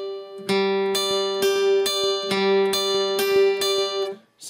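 Acoustic guitar picked with a flatpick, playing a G arpeggio pattern: open G string, then high E, B and high E again, the notes ringing into each other. About two notes a second, eight notes in all: the four-note figure is played twice.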